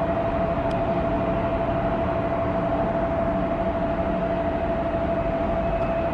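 Distant jet airliners at the airport: a steady, even rumble with a constant whine running through it.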